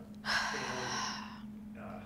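A person's loud, breathy sigh or gasp close to a microphone, lasting about a second, with talking resuming near the end.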